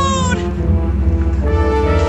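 A young woman's high, drawn-out yell, falling in pitch and cutting off about half a second in, over a steady background music track.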